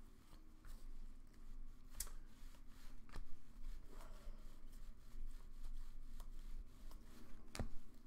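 Trading cards being thumbed through one by one, a soft sliding and flicking of card on card with a few sharp clicks as cards snap past.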